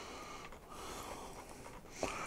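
Faint scraping and rubbing of a small plastic buffer stop as it is worked onto the steel rails of model railway track by hand.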